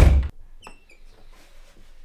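A bedroom door pulled shut with a loud thump, followed about half a second later by a short high squeak.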